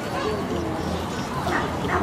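A dog barking, two short barks near the end, over the chatter of a crowd.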